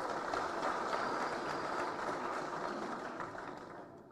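Audience applauding in a hall: a dense clatter of many hands clapping, at its fullest in the first half and slowly dying away toward the end.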